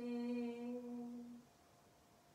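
A woman's voice chanting a yoga sutra: one steady note, held for about a second and a half, then stopping.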